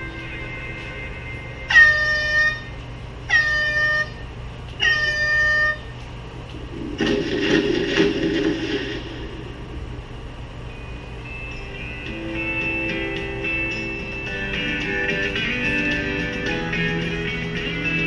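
Three short warning horn blasts about a second and a half apart, then the rumble of a light quarry blast loosening the stone layers, followed by guitar music coming in. It is the quarry video's soundtrack played over a hall's speakers.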